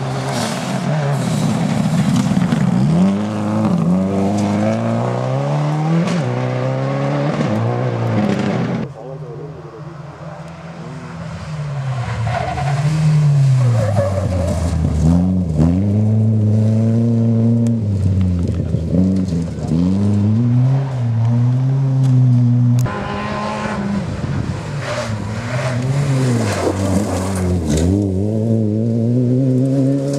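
Rally cars driven hard on a gravel stage, one after another, each engine revving up and dropping back through gear changes, with the hiss of tyres sliding on loose gravel. The sound changes abruptly twice, about a third of the way in and about three quarters of the way through, as one car gives way to the next.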